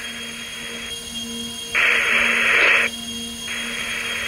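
Radio static: a hiss cut off above and below, like phone audio, over a steady low hum. It steps between quieter and louder levels with sharp edges, including a loud burst of hiss lasting about a second, just under two seconds in.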